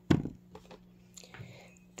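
Faint handling of wood-mounted rubber stamps being picked up and shifted on a table, with a brief louder sound right at the start, over a low steady hum.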